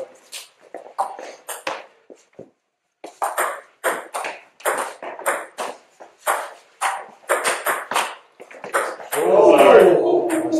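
Table tennis ball clicking off bats and table in a fast rally lasting about six seconds, the hits coming a few times a second. Near the end the point finishes and a loud voice cries out.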